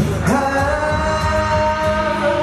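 A male singer performing live with an acoustic guitar: a strum right at the start, then one long held sung note over the guitar.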